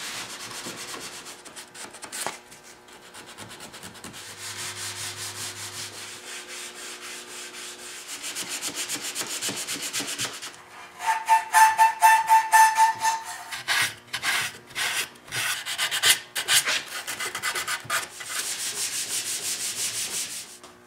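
Hand sanding of a maple harpsichord case with 220-grit gold sandpaper, rubbing back and forth. The strokes grow louder and quicker about halfway through.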